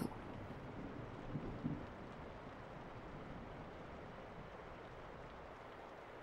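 Quiet pause filled by a faint, steady background hiss, with a soft, brief sound about a second and a half in.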